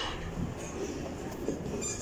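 ThyssenKrupp passenger lift running, heard from inside the car: a steady low rumble, with a faint click near the end.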